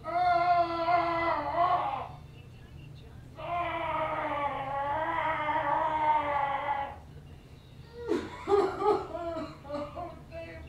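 A man's long, drawn-out wailing moans, two held for a couple of seconds each, then a shorter broken cry near the end: the exaggerated groaning of someone straining on the toilet.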